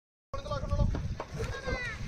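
A brief dropout to silence at the start, then a group of people's voices, a child's among them, with a short high call near the end, over low wind rumble on the microphone.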